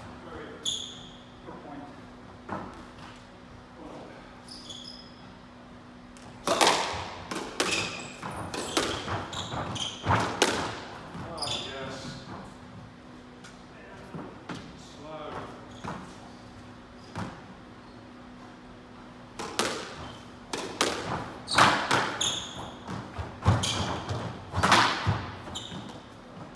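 Squash ball being struck by rackets and smacking off the court walls in two bursts of play, with sneakers squeaking on the wooden floor, echoing in the enclosed court. Quieter stretches between the bursts hold footsteps and a steady low ventilation-like hum.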